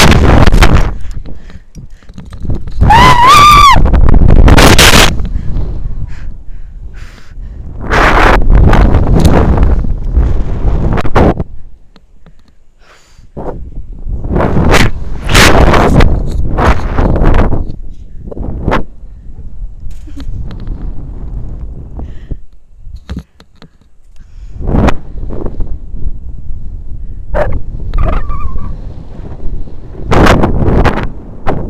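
A woman's short high-pitched scream a few seconds in as she drops on a rope jump, then loud wind rush on the body-worn camera's microphone that swells and fades in several surges as she falls and swings back and forth on the rope.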